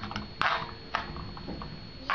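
Metal spoon stirring chopped vegetables in a bowl, clinking and scraping against it, with two sharper clanks about half a second apart and a few lighter ticks.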